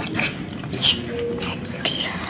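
Two kittens eating fried fish off a plastic plate: close-up chewing and smacking with irregular small clicks.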